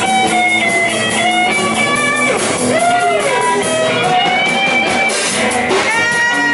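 Live rock band playing an instrumental boogie section: a lead electric guitar plays a melody with bent, sliding notes over rhythm guitars, bass and a drum kit.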